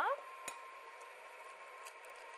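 An egg cracked against the rim of a glass bowl: one sharp tap about half a second in, then a fainter click near the end as the shell is pulled apart. A faint steady hum runs underneath.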